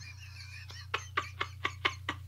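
A man's laughter held back behind his hand. It starts about a second in as a run of short breathy bursts, about four a second, over a steady low electrical hum.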